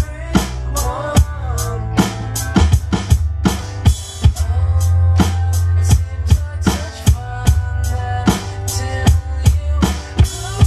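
Rock drum beat played on an Alesis electronic drum kit, with kick, snare and cymbal hits several times a second, over a band's recorded backing track with bass and pitched instruments in an instrumental passage.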